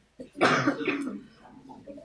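A single loud cough about half a second in, dying away within a second, with faint room chatter after it.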